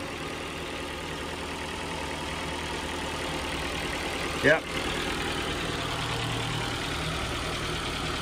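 Ford Fiesta engine idling steadily under an open bonnet, running really well shortly after its first start as a salvage car.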